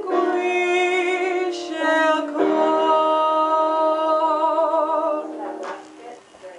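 A woman singing an Italian song unaccompanied, holding long notes with vibrato. The song ends about five seconds in.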